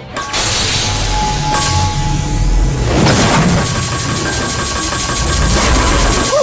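Anime sound effects of clacker balls being swung and charged with energy over music: a dense loud rush with a fast, even ticking from about a second and a half in.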